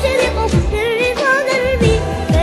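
Students' voices singing an Arabic nasheed together, in an ornamented, wavering melody over a steady bass. Deep tones that fall in pitch recur under the voices.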